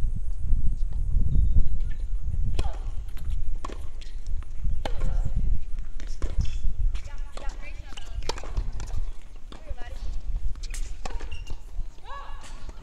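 Wind rumbling on the microphone, with scattered sharp knocks of tennis balls bouncing and being struck on the hard courts and faint voices in the second half.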